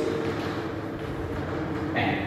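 A steady low background hum with a faint steady tone in it, and a short click at the very end.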